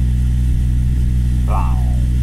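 Steady low engine drone, a deep hum that holds an even level without rising or falling.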